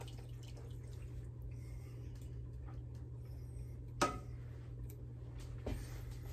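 Thick tomato sauce sliding and dripping faintly out of a tipped can into a pot, over a steady low hum, with one sharp knock about four seconds in.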